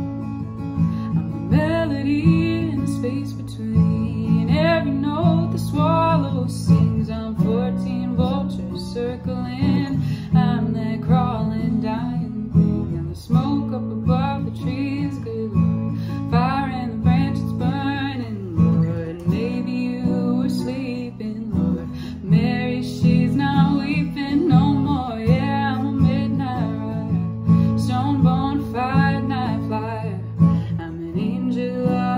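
Acoustic guitar strummed in steady chords with a woman singing over it in phrases broken by short pauses.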